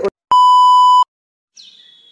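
A loud, steady electronic beep lasting under a second, cutting off abruptly. Near the end, faint short falling chirps begin.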